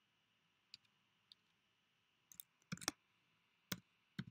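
Keystrokes on a computer keyboard as a filename is typed, slow and uneven. There are faint single taps about a second in, then a quick run of several keys just before the three-second mark and one more near the end.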